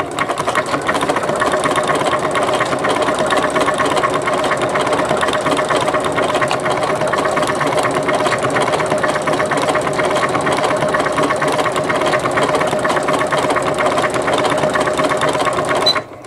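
Janome MC9000 computerized sewing machine stitching at a steady, fast pace through a decorative bobbin-work stitch, its needle mechanism running without a break, then stopping at the very end.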